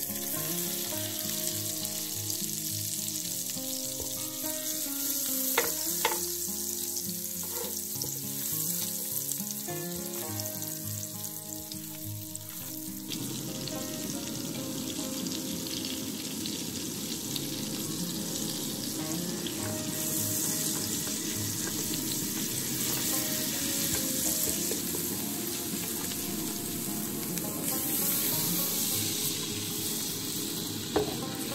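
Butter melting and sizzling in a hot aluminium pan, with a few sharp clicks of the stirring spoon in the first several seconds; about 13 seconds in the frying grows fuller and louder as the butter bubbles. Near the end milk is poured into the hot butter.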